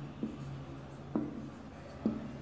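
Marker pen writing on a whiteboard: faint stroke sounds with two light ticks of the tip on the board, about a quarter second and a second in.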